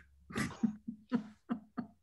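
A person laughing in a run of short bursts.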